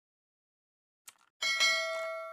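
Subscribe-animation sound effects: a short click about a second in, then a notification-bell chime that rings out with several steady tones and slowly fades.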